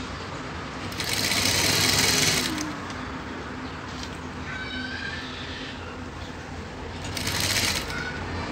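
Industrial sewing machine stitching two fabric piping strips together in two short runs: one about a second and a half long starting a second in, and a brief one near the end. A steady low hum runs between the runs.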